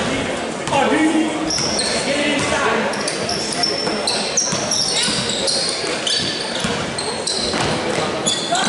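Sneakers squeaking in short, high chirps on a hardwood gym floor and a basketball being dribbled, with spectators' voices and shouts echoing around a large gym.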